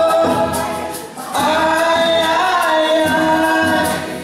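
A woman and men singing a folk song together in long, held phrases, with a short break between lines about a second in, over an acoustic guitar and a rope-tensioned drum.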